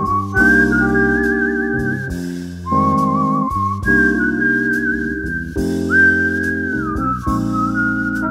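Jazz combo recording: a high, pure-toned lead melody in long held notes with a wide wavering vibrato, over sustained chords and bass. About six seconds in the lead glides up into a new held note.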